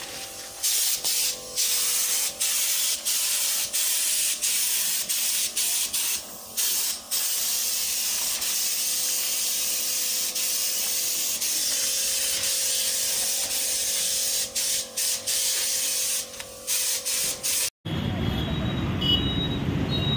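A spray gun hisses as it sprays wood finish onto a wooden sofa frame. It starts about a second in and goes in long bursts with many short breaks where the trigger is let off, then cuts off suddenly near the end.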